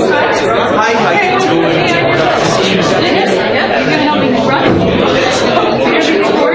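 Many people talking at once in a large room: a steady, indistinct hubbub of overlapping voices.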